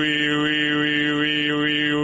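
A man's voice sustaining one low pitch while sliding quickly back and forth between 'ee' and 'oo' vowels about five times, then holding on 'oo'. This is a vowel-equalization exercise for training the tongue position.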